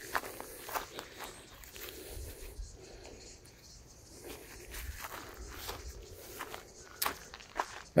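Footsteps in thongs (flip-flops) crossing a gravel path and dry grass: an irregular run of faint crunches and clicks, with two sharper clicks near the end.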